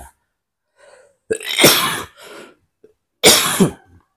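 A man coughs twice, about two seconds apart, each a short loud cough followed by a softer one.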